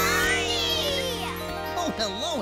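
A tinkling, sparkly musical jingle over a held chord, its high chimes sliding downward through the first second and a half, with children's excited voices over it.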